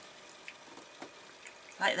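Liquid floor polish pouring faintly from a plastic bottle into a small plastic lid, with a few soft ticks about half a second apart.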